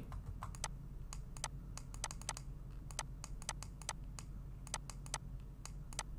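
Computer mouse button clicking in a quick, irregular run of about five clicks a second as strokes of handwriting are drawn in a paint program, over a faint steady low hum.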